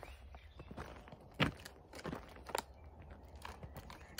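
A plastic sweets packet crinkling as it is handled and opened for a sweet, with scattered short crackles, the sharpest about a second and a half in.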